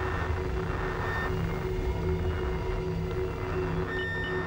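Ambient sound-design drone: a steady low rumble with faint sustained tones held above it.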